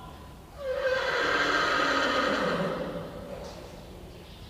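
A horse whinnying: one loud, long call of about two seconds that begins about half a second in and fades out.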